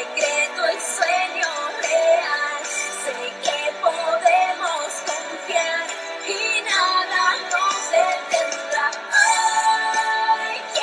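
Recorded song with a singer's voice over instrumental backing, with no bass: nothing sounds below the low mid-range.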